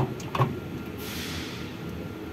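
A screwdriver and wiring being worked at the terminal block of a fuel dispenser's control box: two light clicks near the start, then a short scraping rustle about a second in.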